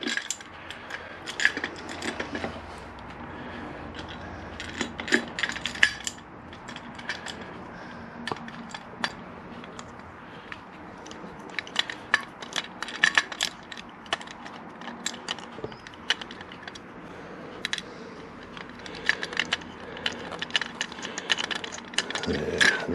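Small metallic clicks and taps in irregular clusters as Allen-headed bolts are screwed in by hand to fix a motorcycle ignition barrel to a CNC-milled top yoke.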